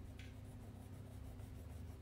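Faint scratching of a crayon rubbed back and forth on paper while colouring in, several quick strokes a second, over a low steady hum. There is a brief higher squeak just after the start.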